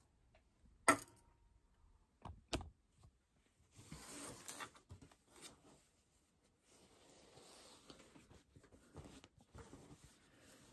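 Faint rustling of cotton fabric being handled and smoothed at a sewing machine, with a few separate sharp clicks in the first three seconds. The machine itself is not running.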